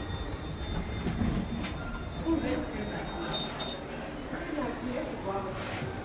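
Glass passenger lift travelling down: a steady low rumble of the moving car with a thin high tone that stops a little past halfway. Faint voices of people can be heard in the background.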